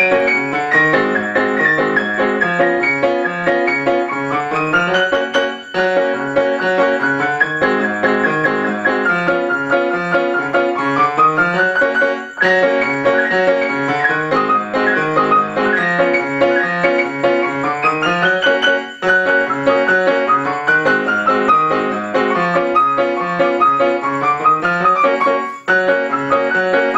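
Piano played four hands: a busy tune over a bouncing bass line, its phrase repeating about every six and a half seconds, each ending in a brief pause.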